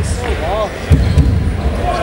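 A basketball being dribbled, two low bounces in quick succession about a second in, played over an arena's sound system and echoing in the hall, with voices behind it.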